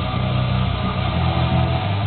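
Electric bass guitar playing rapid repeated low notes along with a heavy metal track.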